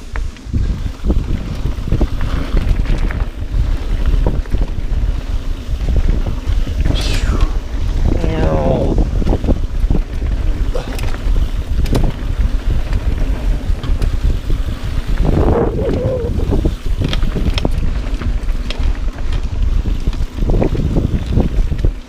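Mountain bike riding fast down a dirt singletrack: heavy wind rush on the microphone, with tyres on dirt and the bike rattling and knocking over bumps and roots.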